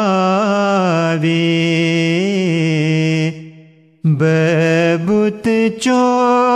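Ismaili devotional ginan sung by a man in long, ornamented held notes. The phrase fades out about three seconds in, a brief pause follows, and a new phrase begins about a second later.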